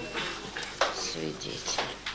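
Indistinct voices mixed with sharp clicks and clinks, the loudest about a second in and another near the end.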